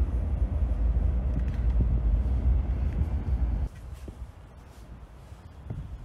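Wind buffeting the microphone outdoors, a loud low rumble that cuts off abruptly a little past halfway. After it comes quiet open-air background with a few faint knocks.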